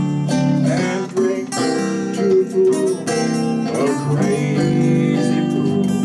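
Guitars playing together in a jam: strummed acoustic guitar chords with picked single-note lines, sounding continuously.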